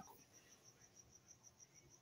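Near silence with a faint, high-pitched chirping pulsed evenly, about seven times a second.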